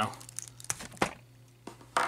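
Plastic action-figure parts being handled as a hand is worked off the wrist joint of a Revoltech-style Wolverine figure: light rubbing with a few sharp clicks, the loudest about a second in and another just before the end.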